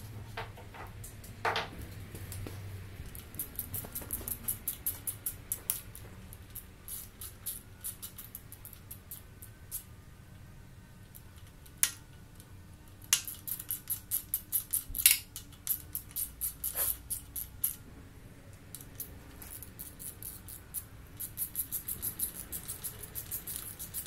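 Hand ratchet clicking in quick runs of a few seconds as the oil pump bolts on the front of an LS3 engine block are run in, with a few sharper single metallic clicks between the runs.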